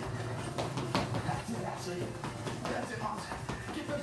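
Quick footsteps of running in place at top speed on a tiled floor, with a voice in the background.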